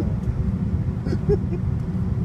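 Steady low rumble of a jet airliner taxiing, heard from inside the passenger cabin. Faint voices talk over it near the middle.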